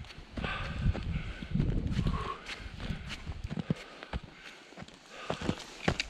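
Footsteps tramping through snow, with hard breathing from the walker in the first couple of seconds. A few sharp clicks come in the last two seconds.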